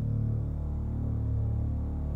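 Low, steady droning background score, a dark held sound with no beat or melody.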